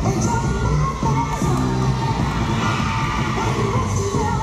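Dance music playing in a gym, with the crowd cheering and shouting over it.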